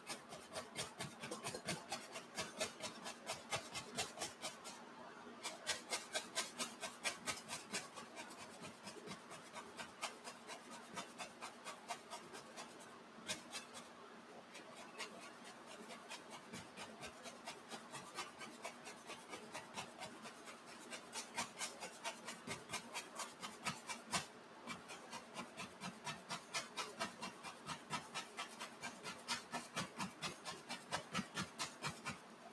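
Two-inch painting brush tapped repeatedly against an oil-painted canvas: a rapid, even run of soft taps, a few each second, with a few short breaks.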